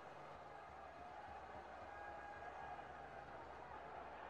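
Faint, steady background noise with a low hum and no distinct event: near silence.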